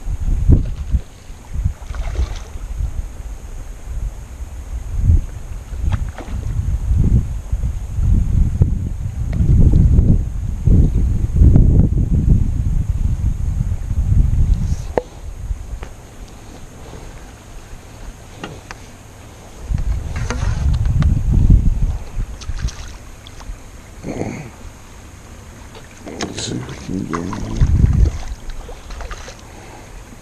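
Wind buffeting the microphone in irregular low rumbling gusts, loudest about ten to twelve seconds in and again around twenty-one seconds.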